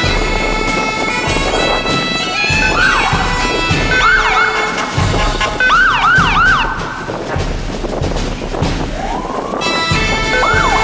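Police motorcycle sirens giving short whooping blips that rise and fall, with a quick run of four together about six seconds in and a slower rising wail near the end. Bagpipe drones hold steady behind them.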